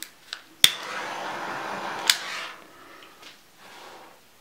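A hand-held heat tool used to fuse encaustic wax: it switches on with a sharp click, hisses steadily for about a second and a half, and ends with a second click.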